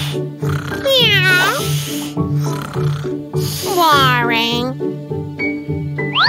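Cartoon cat meowing twice, each call sliding down in pitch, over background music with a steady beat.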